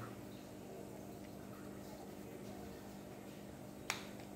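Quiet room tone with a faint steady hum, and one sharp click just before the end.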